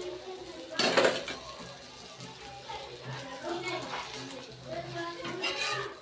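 Voices, children's among them, and some music in the background, with a loud scrape and clatter of a metal spatula on a tawa about a second in and again near the end as a roti is pressed and turned.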